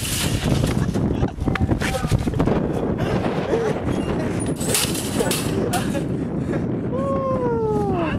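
Laughter and voices over knocks and rattles of a wire shopping cart and a plastic wheelie bin. Near the end, a drawn-out falling vocal cry.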